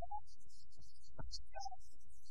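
Low steady hum and rumble on an old film soundtrack, with brief broken fragments of a voice over it.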